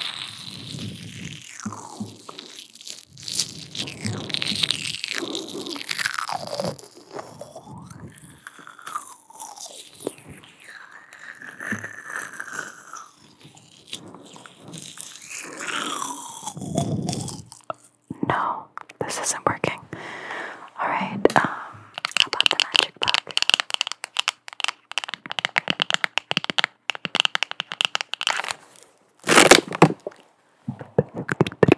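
Close-miked mouth sounds and inaudible whispering, with a thin stick tool held at the lips, close to the microphone. From about 18 seconds in, a fast run of sharp clicks and taps takes over.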